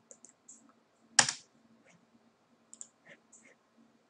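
Clicks from a computer mouse and keyboard at a desk: a scatter of short faint clicks, with one much louder sharp click about a second in.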